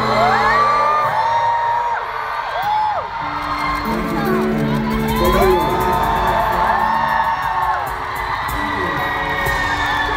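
Live band holding sustained chords at the close of a song, while a large crowd of fans screams and cheers in many overlapping high-pitched whoops.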